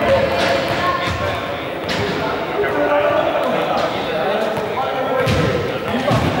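Small balls bouncing off a sports-hall floor and wall, a few sharp thuds that echo in the large hall, over indistinct voices.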